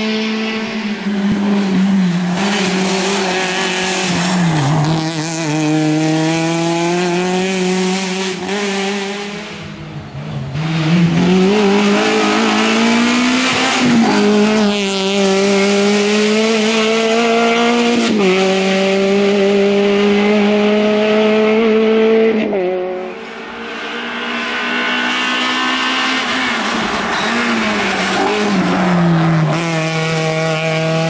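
Suzuki Swift rally car's engine driven hard on a twisting stage. It revs up through each gear, and the pitch drops sharply about six times at gear changes and lifts for the bends, fading and swelling as the car draws away round the corners.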